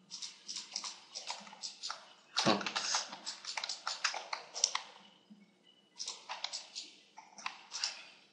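Computer keyboard and mouse clicking: a rapid, irregular run of short taps and clicks, with one heavier knock about two and a half seconds in.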